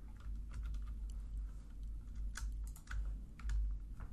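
Computer keyboard typing: irregular, scattered keystrokes as code is entered.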